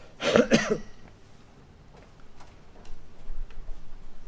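A man coughing twice into his fist, a short burst in the first second. Faint clicks and rustles follow.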